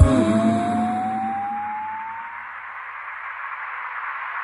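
The end of a cold-wave electronic song: the drum beat stops, and a single electronic tone glides slowly upward over about two seconds while a hissy wash of sound fades down.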